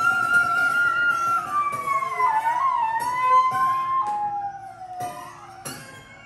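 Glissando flute holding a high note, then sliding its pitch down with bends and slow glides. Piano strings sounded by hand inside a prepared grand piano give several sharp attacks in the second half.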